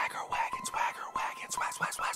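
A man whispering a rap under his breath, with only faint music beneath.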